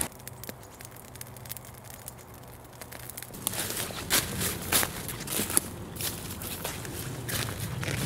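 Faint crackling from a small smouldering campfire of sticks for the first three seconds, then footsteps crunching through dry fallen leaves at an uneven walking pace.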